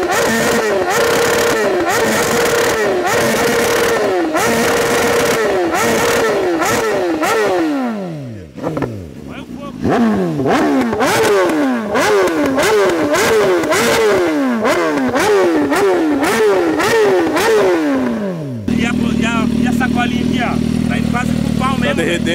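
BMW S1000RR's inline-four engine revved hard while standing, about once a second: each rev climbs, hangs briefly at the top and falls away with the exhaust popping and crackling, the remapped bike spitting flames. About eight seconds in the revs sink lower before the blipping resumes, and near the end the revving stops, leaving a steady engine note.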